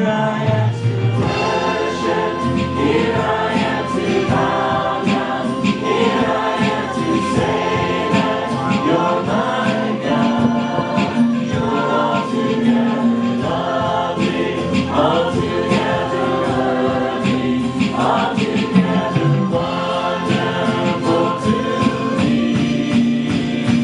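Live contemporary worship music in a church: a band with electric guitar and sustained keyboard-like held notes, with singers leading a standing congregation in song.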